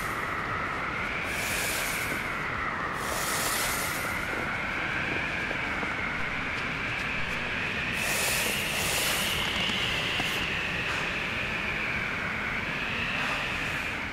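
AI-generated mountain wind, steady and howling, with a slowly wavering whistle running through it and a few brief surges of hiss.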